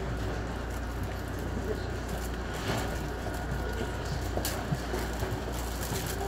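Steady low hum and rumble inside a Metra Rock Island commuter train car, with a few faint clicks.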